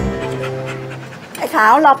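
A dog panting, under the last held chord of soft background music that fades away over the first second. Near the end a woman calls out loudly to the dog.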